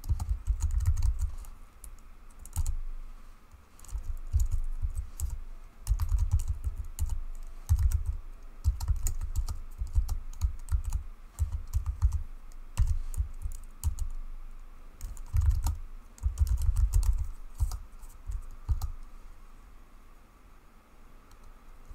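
Typing on a computer keyboard in short bursts of keystrokes separated by pauses of a second or two, each key press carrying a deep knock.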